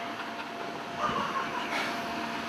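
Steady whooshing hum of an electric air blower keeping an inflatable ring inflated, with a faint steady tone running through it.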